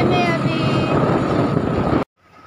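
Loud, steady street traffic noise with a low engine-like hum underneath, and a voice speaking briefly at the start.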